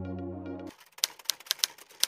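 Electronic intro music that stops abruptly under a second in, followed by a quick run of typing key clicks, a typing sound effect.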